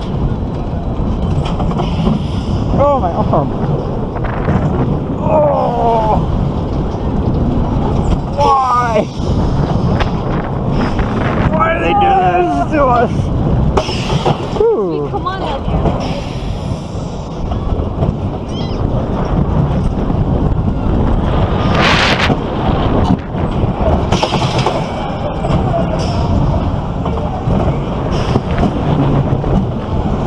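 Roller coaster ride heard from on board: steady wind and track rumble, with riders' voices yelping and calling out over it several times.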